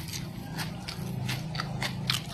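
Someone chewing a mouthful of crispy shredded potato chips (keripik kentang), an irregular run of sharp crunches.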